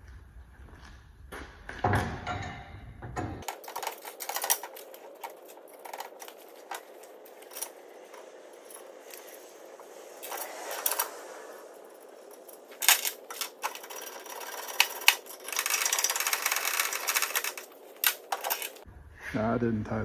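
Steel parts of a clay-target trap frame being handled and bolted together: irregular metal clicks, knocks and clatter from the frame pieces and hand tools, with a denser run of rapid clicking near the end.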